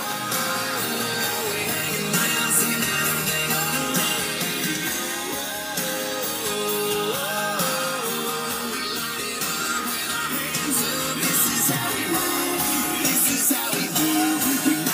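A song with singing, playing a little loud on the truck's car stereo, heard inside the cab.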